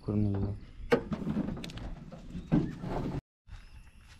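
Kia Sonet's bonnet being released and lifted: a sharp latch click about a second in, followed by handling and hinge noise as the hood goes up.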